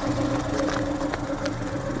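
A vehicle engine idling steadily, a constant low hum that does not change in pitch.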